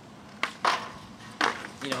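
Two loud sharp knocks about a second apart, with a fainter click just before the first.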